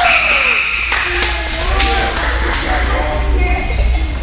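Voices of spectators and players shouting and talking in a gymnasium, a long falling shout trailing off just after the start, with a couple of sharp thuds and a steady low hum beneath.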